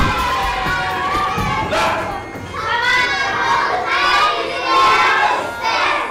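A classroom of young children shouting and cheering all at once, a loud din of many overlapping voices that starts suddenly.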